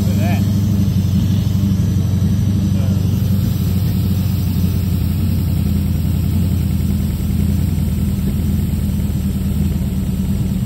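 Fuel-injected Chevy engine on a run stand idling steadily just after starting, its base ignition timing set at about 15 degrees before top dead center.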